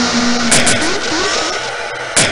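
Harsh noise-rock sound collage: a dense wash of noise with a low held tone that stops about half a second in, a few sharp cracks, and short rising glides.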